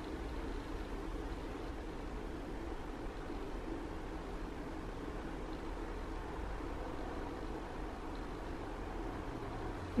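Steady faint background hiss with a low hum, even throughout, with no distinct events.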